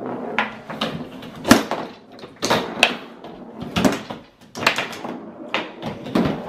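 Foosball play: the ball clacks against the plastic players and the table walls while the rods knock, giving a run of irregular sharp clacks. The loudest comes about one and a half seconds in.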